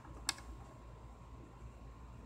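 A single sharp click about a quarter of a second in, a hand tapping on a device while typing, over a low steady hum.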